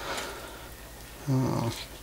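A man's short hummed hesitation, a low "mmm" held for under half a second, coming about a second and a half in, mid-sentence.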